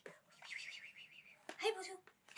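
A person whispering softly, with a short voiced syllable near the end.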